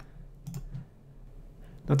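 A few faint clicks of a computer mouse button.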